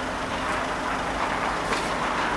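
Steady city street noise, the even hum of traffic in the distance, with a faint low steady tone.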